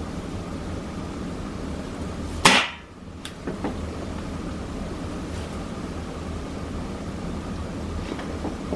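A single shot from a .22 Gamo Swarm Fusion Gen2 air rifle firing a pellet, a sharp crack about two and a half seconds in, followed by a fainter click under a second later.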